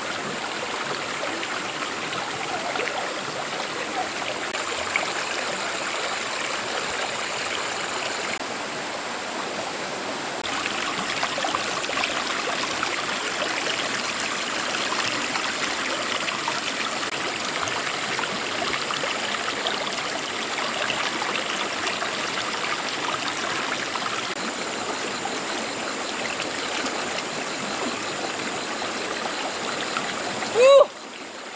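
Shallow rocky stream running steadily, water rushing and trickling over stones, with a thin steady high tone above it.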